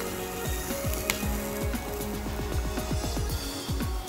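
Background music with steady held tones and repeated low notes that drop in pitch, several a second, over faint sizzling of capsicum and onion stir-frying in a pan.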